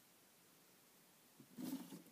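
Near silence, then about a second and a half in a brief rustle of the hand-held phone camera being handled as it changes hands.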